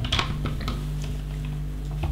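Loose LEGO plastic bricks clicking and rattling as hands pick through the pile and press pieces together: a few light clicks, most of them in the first second. A steady low hum runs underneath.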